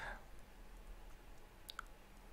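Faint room tone with a brief light click or two near the end.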